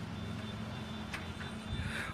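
Low, steady rumble of a motor vehicle engine, with one faint click about a second in.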